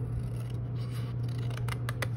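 Scissors cutting through a sheet of white paper, a few short snips with the clearest near the end, over a steady low hum.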